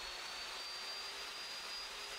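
Evolution 15-inch cold saw running free at full speed, a steady high motor whine that has just finished climbing in pitch as it spun up, over a steady hiss; the blade has not yet touched the steel.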